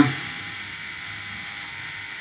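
Steady background hiss with a faint steady hum: room and recording noise in a pause between words.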